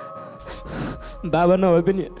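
A man crying into a handheld microphone: a breathy, sobbing intake of breath about half a second in, then a few tearful spoken words near the end, over soft background music holding steady notes.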